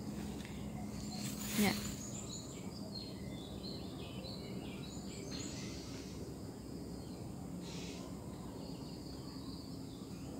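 Quiet outdoor garden ambience: a faint steady hum under scattered high, faint chirping, joined in the second half by a thin steady high-pitched trill.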